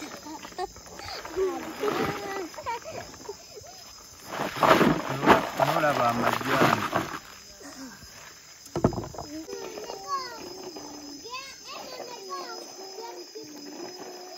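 Shea nuts rattling as they are scooped and tipped from a plastic basin into a woven sack, loudest for a couple of seconds near the middle, with a single knock shortly after. Voices talk in the background.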